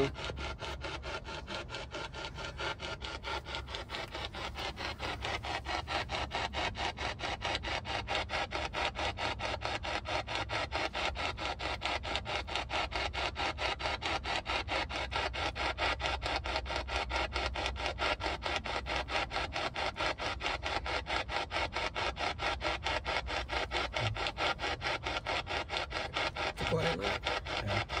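Handheld spirit box sweeping rapidly through radio stations: a fast, even chopping of static that runs on without a break. No voice comes through the sweep; to the listeners it is "pretty quiet".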